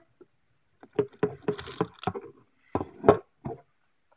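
A quick, irregular run of about a dozen knocks and clatters, things being handled and bumped close to the microphone.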